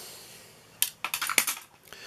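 A hand dips into a glass fish tank and lifts out a small bass jig. There is a soft wash of water at first, then a quick run of sharp clicks and clinks about a second in.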